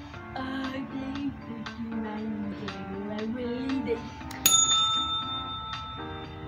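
Music with a wavering melodic line, then a single ding of a desk call bell about four and a half seconds in, ringing on for over a second.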